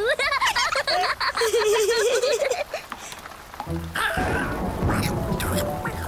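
A wavering, wordless cartoon voice for the first few seconds, then light background music over rain patter from about four seconds in.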